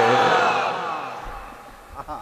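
The reverberant tail of a man's long chanted note through a public-address system, dying away over about a second and a half into faint hiss.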